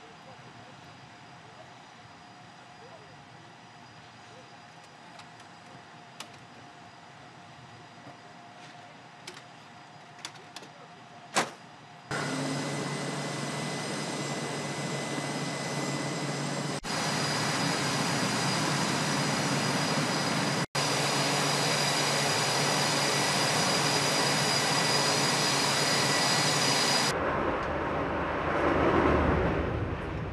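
A low hum with a few scattered clicks, then about twelve seconds in a sudden jump to loud, steady jet engine noise with a high whine running on it, typical of jets running on an aircraft carrier's flight deck. The engine sound changes near the end.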